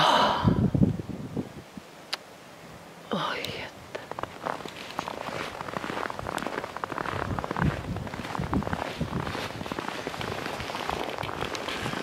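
Crunching of footsteps and camera handling in fresh snow, a steady run of small irregular crackles through the second half. A breathy, whisper-like voice sound comes at the start and again about three seconds in.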